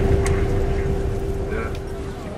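Low rumble inside a moving bus, with a steady hum running under it.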